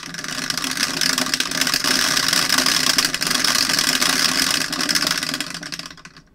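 Electric automatic dice roller running: its motor whirs while two dice rattle and click rapidly against the clear plastic dome. The sound stops abruptly after about six seconds.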